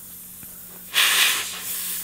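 Air hissing out of a punctured all-terrain tyre, starting suddenly about a second in, loudest at first and then easing but still running.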